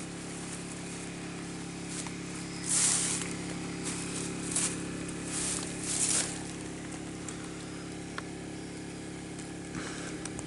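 A steady mechanical hum holding several low tones, like a small engine running. Short bursts of hiss rise over it around three, four and a half, five and a half and six seconds in.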